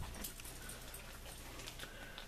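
Faint handling sounds of a comic book being lifted off a shelf and swapped for the next issue: a few soft ticks and rustles over quiet room tone with a low steady hum.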